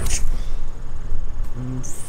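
Wind buffeting the microphone in gusts, with a rustle as the camera swings, and a brief low voiced grunt near the end.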